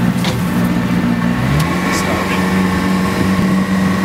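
Boat's outboard motor idling steadily, its pitch shifting slightly about a second and a half in, with a few faint ticks.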